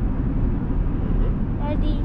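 Steady low rumble of a 2020 Chevrolet Silverado with the 3.0 L Duramax diesel under way, engine and tyre noise heard inside the cab. A voice starts near the end.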